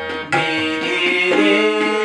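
Harmonium playing held notes that change pitch in steps, with tabla accompaniment, in a folk-devotional song.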